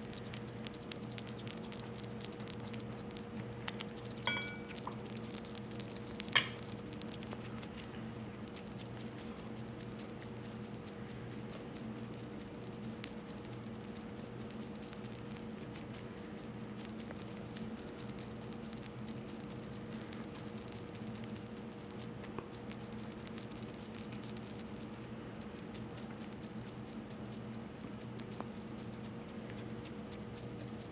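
Pet African pygmy hedgehog chewing shredded chicken, a steady run of tiny wet clicks and smacks from its mouth, over a faint steady electrical hum. Two sharp clicks stand out, the louder about six seconds in.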